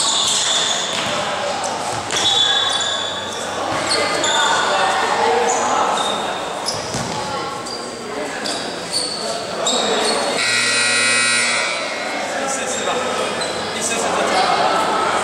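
Indoor basketball game noise echoing in a large gym: voices calling out and short high squeaks from the court. About ten seconds in, a steady buzzer sounds for about a second and a half.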